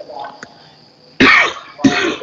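A man coughing twice, about a second in and again near the end, heard through a voice-chat connection.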